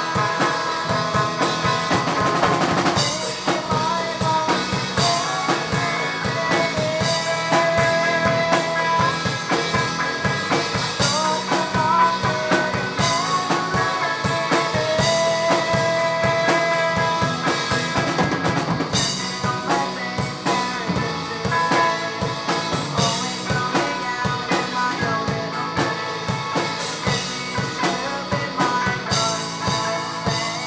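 Live rock band playing: electric guitars and bass guitar over a drum kit, with no break.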